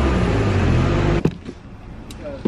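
A motor vehicle's engine running loud and close, a low hum of several pitches. It cuts off abruptly a little over a second in, leaving a much quieter background with a few clicks.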